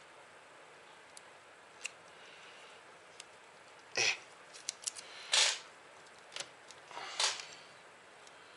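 Fingernails picking at the backing film on a strip of silicone fusion tape: faint scattered clicks, with three short hissing noises about four, five and a half, and seven seconds in.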